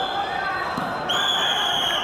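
Referee's whistle in a wrestling bout: the end of a short blast at the very start, then one steady, longer blast of about a second from just past halfway, over voices in the hall.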